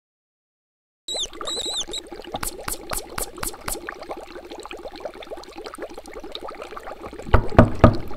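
Liquid bubbling and trickling, starting about a second in, with a run of quick pops about two and a half seconds in and a few heavy low thumps near the end.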